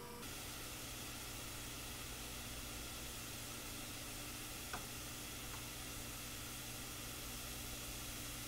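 Diced onion sizzling steadily in hot oil in a frying pan: an even, continuous hiss.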